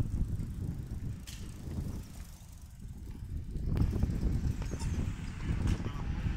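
Road bicycles rolling on a group ride, a low uneven rumble with a few sharp clicks.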